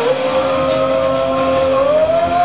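Live rock band playing loudly, with one long held note that slides up in pitch near the end.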